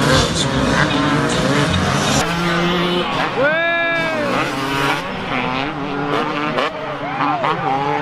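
Motocross bike engines revving up and dropping off as riders work the track, with one clear rev rising and falling about halfway through.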